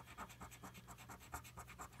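A copper penny scraping the scratch-off coating off a paper lottery ticket: faint, rapid, short strokes.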